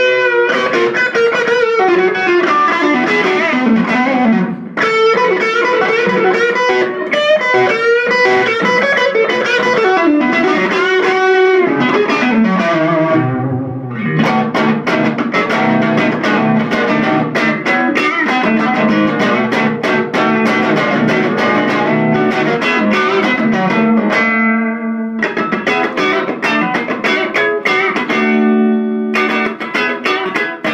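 Electric guitar, a thinline Telecaster with Kloppmann '60 pickups, played through an Electro-Harmonix Soul Food overdrive pedal into an ATT Little Willie 15-watt all-tube combo with two 8-inch speakers, with some distortion. For about the first half it plays single-note lead lines with string bends, then strummed chords and short repeated chord stabs.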